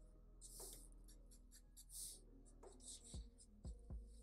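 Felt-tip marker sketching short strokes on paper, faint and scratchy, about four swishes. A few soft taps come in the second half as the pen tip meets the paper.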